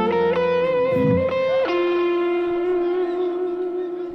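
Arrocha/seresta music ending on a guitar phrase: a few plucked notes over a fading bass line, then one long held note that rings and fades out near the end.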